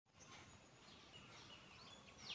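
Near silence, with faint distant bird chirps over low background hiss.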